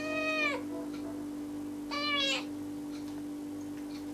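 Tabby kitten meowing twice, about two seconds apart; each meow is a short call that rises and falls in pitch. A steady low hum runs underneath.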